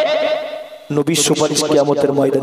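A man preaching in a sung, drawn-out delivery: a long held note fades away, then the chanted phrases start again about a second in.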